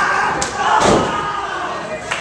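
Wrestling impacts in a ring: a sharp smack about half a second in, then a heavier thud about a second in as a wrestler is taken down onto the ring canvas, with spectators' shouting around it.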